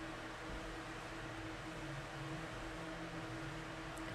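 Steady faint hiss with a low, even hum: room tone, with no distinct event.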